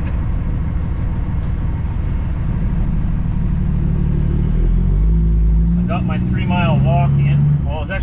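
Semi truck's diesel engine heard from inside the cab as the truck pulls away across a yard, a steady low drone whose pitch rises about halfway through as it accelerates.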